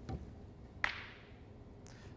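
Two metal balls rolling toward each other in a wooden track collide once with a single sharp click a little under a second in, after a soft low knock at the start.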